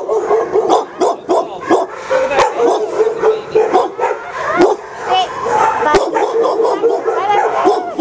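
Several kennelled dogs barking and yipping over one another without a break.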